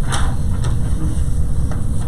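Steady low rumble of room noise, with a few faint short clicks.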